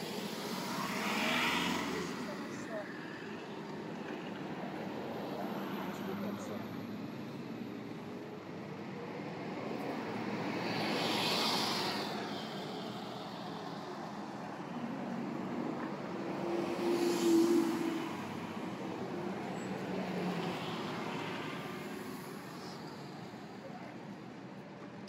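City street traffic at an intersection: vehicles passing one after another, each swelling and fading, including a city bus pulling by close. The loudest pass, a little past halfway, carries a steady engine hum. Heard through a phone's built-in microphone.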